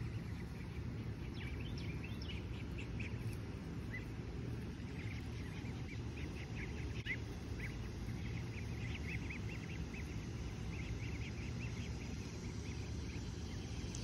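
Muscovy ducklings peeping: many short, high peeps, scattered at first and coming more often in the second half, over a steady low background hum.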